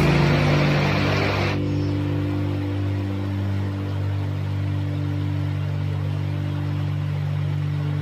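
Shallow river rapids running over stones, an even rushing hiss that drops away abruptly about a second and a half in, leaving a steady low hum.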